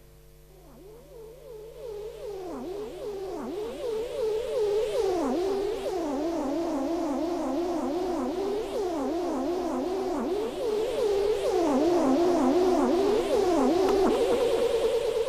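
Analog synthesizer tones from a Nanosynth and Moog Werkstatt modular setup whose pitch, filter and volume are driven by the voltages of an analog Lorenz-attractor chaos circuit: the pitches wobble and glide rapidly and unpredictably, over a whooshing noise. The sound fades in over the first few seconds.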